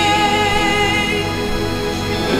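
Slow live worship music with steady held chords; a wavering sung note fades out in the first second.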